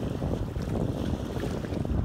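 Wind buffeting the microphone in a steady, fluttering rumble, over water washing along the hull of a Sea Pearl 21 sailboat under way.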